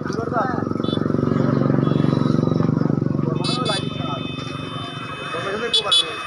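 A motorcycle engine passing close by, swelling to its loudest about two seconds in and then fading, with people's voices around it and a few short high-pitched tones in the second half.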